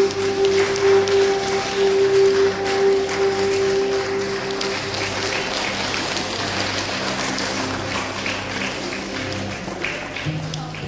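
Audience applauding over soft background music; the music's held notes fade out about halfway through while the clapping carries on.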